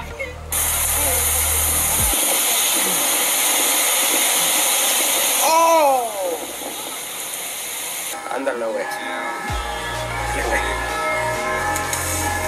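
Playback of a comedy video's soundtrack: bass-heavy music that drops out about two seconds in beneath a loud steady hiss lasting several seconds, a voice swooping down in pitch about six seconds in, then music with a beat returning near the end.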